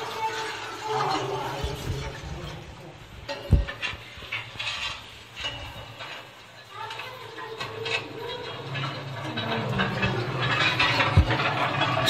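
Indistinct voices in the background, with a single thump about three and a half seconds in.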